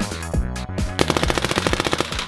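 Electronic music with a heavy bass beat, then about a second in a paintball marker firing rapid-fire, roughly fifteen shots a second in an even stream over the music.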